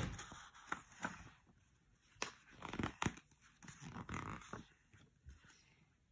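Pages of a children's picture book being handled and turned: scattered paper rustles with a few sharp, crisp clicks.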